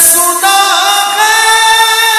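A naat sung in a slowed-down, heavily reverberant lo-fi edit: a voice holding long, drawn-out notes, moving to a new note about half a second in and again just past a second.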